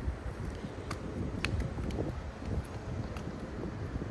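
Wind buffeting the phone's microphone, an uneven low rumble, with a few faint clicks about a second and a half in.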